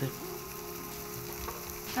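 Radio static: a steady crackling hiss with a faint hum from an open two-way radio channel. The hiss cuts off suddenly just before a callsign is spoken over the radio.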